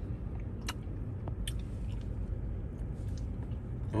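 A person chewing a mouthful of soft glazed doughnut, with a few faint mouth clicks, over a low steady rumble inside a car.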